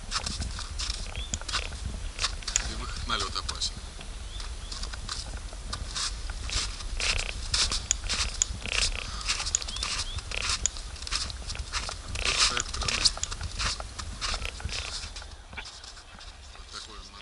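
Footsteps crunching on packed snow in an irregular walking rhythm, over a steady low rumble of wind buffeting the action camera's microphone.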